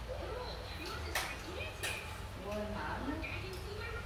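People talking, with two sharp clicks a little over a second in and just before the two-second mark.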